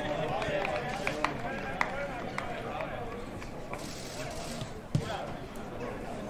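Footballers' voices calling to each other, with several sharp thuds of a football being kicked, the loudest about five seconds in.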